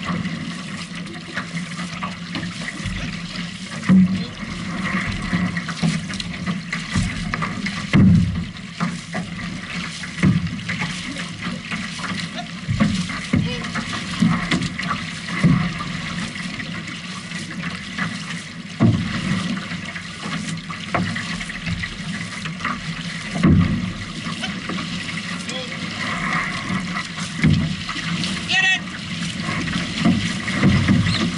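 Outrigger canoe crew paddling hard: paddle blades splashing into the water and water rushing along the hull, with sharper splashes coming irregularly every few seconds.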